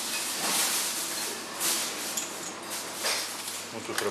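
Kitchen background noise: a steady hiss that swells a few times.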